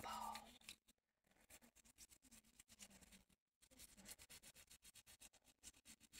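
Faint scrubbing of a toothbrush on a foamy plastic denture, soft scratchy strokes barely above silence.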